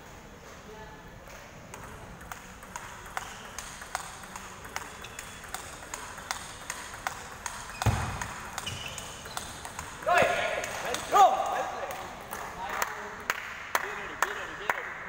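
Table tennis balls clicking off bats and tables, a run of sharp ticks a few per second. A heavy thump comes about eight seconds in, and loud shouting voices follow at around ten to eleven seconds.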